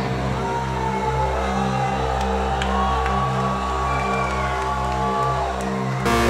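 Sustained low keyboard chords holding between heavy guitar parts, with whistles from the concert crowd gliding over them.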